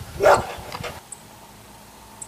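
A young red fox gives one short, sharp bark about a quarter second in, followed by a couple of fainter small sounds.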